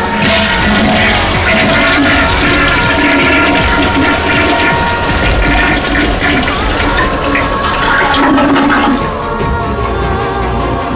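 A wall-hung toilet flushed from its wall push plate, water rushing through the bowl and starting right at the beginning, over background music.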